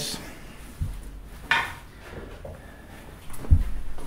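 Handling noises: a few scattered knocks and clicks, with a low thump about a second in and another cluster of knocks near the end.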